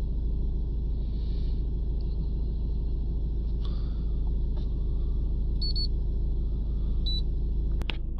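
Ford Mondeo 1.6 TDCi four-cylinder diesel engine idling, a steady low rumble heard from inside the cabin. Two short high beeps come in near the end.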